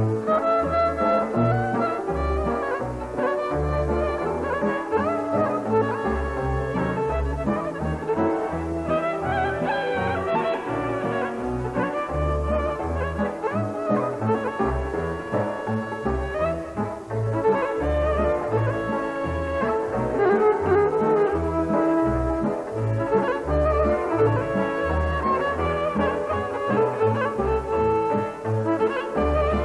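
Romanian folk music: two violins play an ornamented melody together over a double bass keeping a steady beat of low notes, with the rest of the band accompanying.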